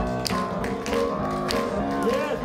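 Live band music led by rhythm-and-blues piano, with sharp percussive taps marking a steady beat about twice a second.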